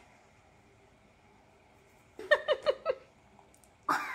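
Near silence for about two seconds, then a child's short high-pitched giggle of four quick notes, and a sharp click just before the end.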